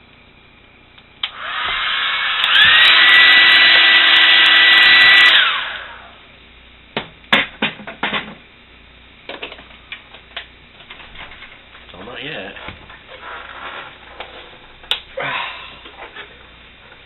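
Hand-held hair dryer switched on about a second in, then stepped up to a higher setting with a short rising whine. It blows loudly for a few seconds, is switched off, and winds down. Scattered clicks and knocks of handling follow.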